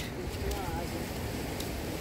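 Outdoor street ambience: a steady low rumble of traffic and wind, with a brief faint voice about half a second in.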